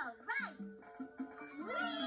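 Cartoon music and sound effects playing from a TV: short swooping pitched notes, then a long tone that rises near the end and slowly falls away.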